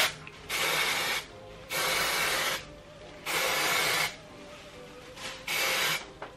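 Aerosol temporary hair colour spray hissing out of the can in four bursts of roughly a second each, with short pauses between.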